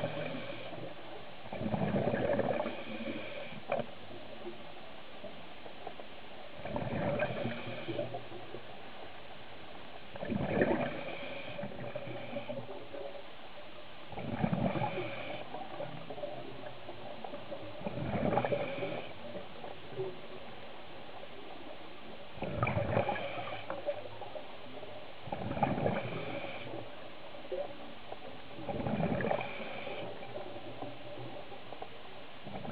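Scuba diver's breathing on a regulator underwater: bubbling exhalations about every three to four seconds, with a faint steady hum underneath.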